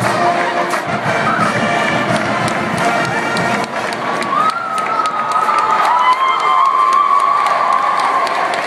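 Stadium crowd cheering and shouting, with sharp claps and shouts throughout. Marching band music is heard in the first half. From about halfway, a single high shout rises and is held to the end.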